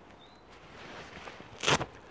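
A combat shirt being handled: faint rustling of the fabric, then one short, sharp rasp about one and a half seconds in as one of its fasteners is worked.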